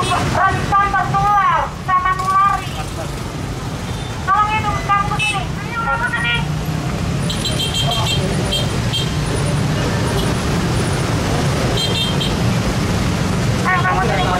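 Steady low rumble of roadside traffic, with raised voices in the first half and a series of short, high-pitched beeps starting about halfway through and again near the end.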